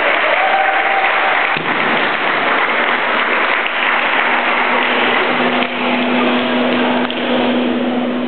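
Spectators in a sports hall applauding, a dense, steady clatter of clapping, with a steady low hum joining about halfway through.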